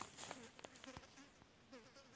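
Near silence, with a faint insect buzzing that rises and falls in short repeated swoops.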